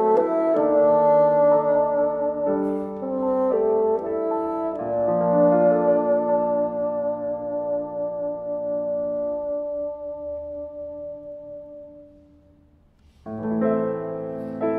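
Bassoon and piano playing slow, sustained notes. A long held note dies away almost to silence about twelve seconds in, then bassoon and piano come in again near the end.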